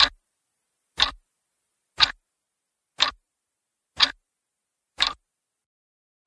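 Ticking-clock sound effect: six even ticks, one a second, marking time passing.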